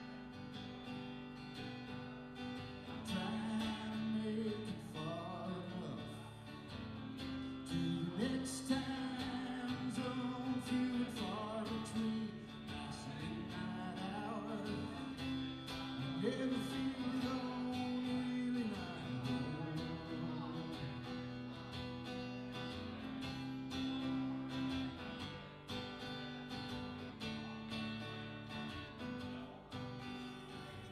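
Two acoustic guitars played together live, strummed chords going steadily through the passage.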